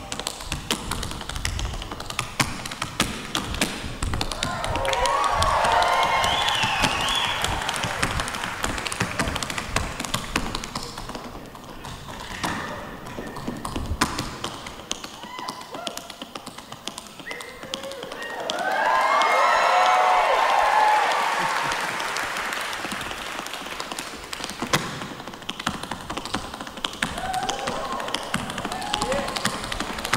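Tap shoes striking a wooden stage floor in a fast, rhythmic tap dance solo, with little or no band accompaniment. Twice the audience breaks into whoops and cheers that swell over the taps, loudest about two thirds of the way through.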